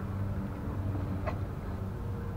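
Steady low machine hum, with one faint click a little over a second in.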